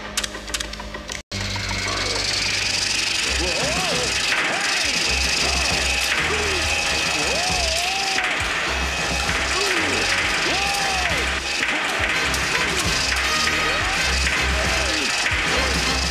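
Cartoon soundtrack of a mechanical bull bucking at full speed: music with a pulsing low beat, clattering and creaking effects, and repeated rising-and-falling whoops. It starts after a brief cut-out about a second in.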